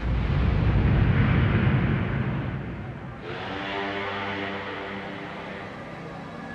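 A sudden deep rumbling boom, a dubbed torpedo explosion, that dies away over about three seconds, followed by sustained dark background music chords.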